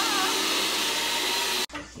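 Countertop blender running steadily, blending a smoothie, then cutting off abruptly shortly before the end.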